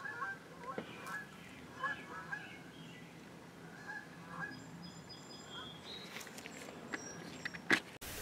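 Faint, short bird calls, scattered and irregular, over a quiet background, with a sharp click just before the end.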